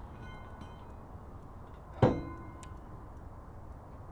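A metal weight plate being hoisted on fishing line gives one sharp clank about two seconds in and rings briefly afterwards, with fainter metallic ringing before it.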